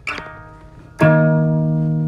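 Electric guitar strummed twice: a short chord at the start that fades, then a louder barre chord about a second in that rings out. The second chord is the three chord in the key of B, the E-flat minor, barred high on the neck.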